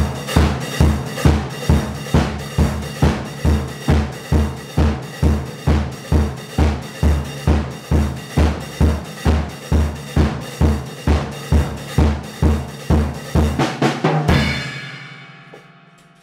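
Acoustic drum kit played in a steady groove, bass drum and snare landing about twice a second with cymbals over them. The playing stops about fourteen seconds in and the cymbals ring out and fade.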